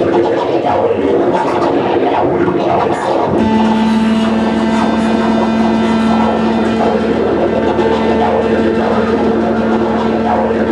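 Loud live noise music: a dense, harsh electronic texture that, about three seconds in, settles into a steady low drone with a stack of sustained tones above it.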